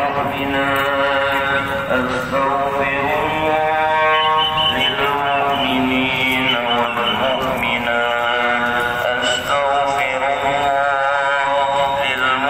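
A single voice chanting an Islamic prayer recitation in long, drawn-out melodic phrases, holding notes and stepping slowly between pitches, with short breaks between phrases.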